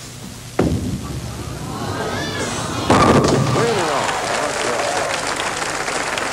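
Bowling pins crashing as the ball strikes them about three seconds in, with the crowd calling out as the ball rolls and then cheering and applauding after the hit.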